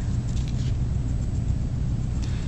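A steady low hum, with no other distinct sound.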